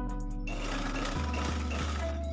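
Black domestic sewing machine stitching, its running noise starting about half a second in, over soft background music.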